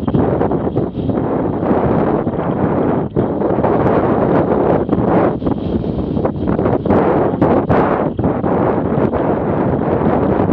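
Wind rushing over a motorcycle-mounted camera's microphone at highway speed: a loud, steady roar with brief dips, which buries the engine.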